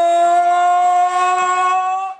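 An emcee's voice holding one long, steady note, the drawn-out final 'go' of 'Are you ready to go?', shouted to hype the crowd; it rises slightly in pitch near the end.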